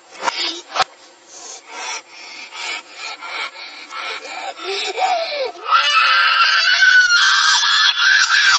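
Sound played in reverse: a few sharp knocks, then a run of rasping, rubbing strokes, then from about three-quarters of the way in a child's loud, high scream with a wavering pitch, played backward.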